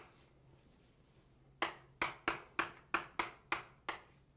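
Writing on a board: about eight sharp taps, starting about a second and a half in and coming roughly three a second, as numbers are written out.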